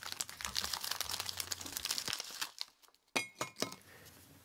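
Crinkling and crackling of packaging, dense and continuous for about two and a half seconds. After a short silence comes a brief rattle with a ringing tone.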